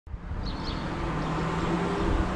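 Outdoor street ambience: a steady traffic rumble, with a few short high bird chirps about half a second in.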